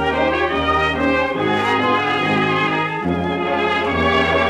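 Dance orchestra playing an instrumental passage of a 1930 fox trot, transferred from a Columbia 78 rpm record.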